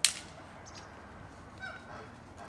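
A dry stick snapped by hand with one sharp, loud crack, as kindling is broken for a charcoal grill fire. Near the end, a short, faint bird call.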